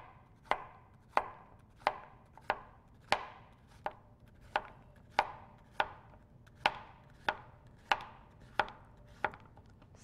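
Chef's knife slicing a large zucchini into half moons on a cutting board: a steady chop about every two-thirds of a second, each stroke ending in a sharp knock of the blade on the board.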